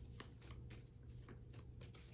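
Tarot cards being handled by hand, giving faint, irregular soft ticks and rustles.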